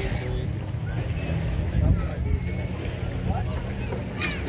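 Steady low rumble of a boat engine idling, under faint background voices.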